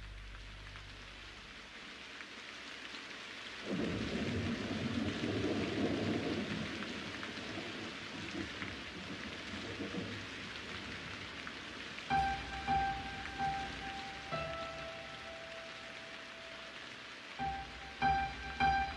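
A held low chord fades out over the first few seconds. Then a steady rain-like hiss sets in, with a low rumble like rolling thunder about four to seven seconds in. From about twelve seconds, slow, soft piano notes play over the rain.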